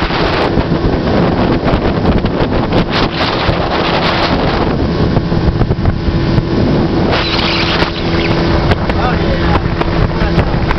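18 hp two-stroke outboard motor running at speed in a steady drone, with wind buffeting the microphone and water rushing past the small boat's hull.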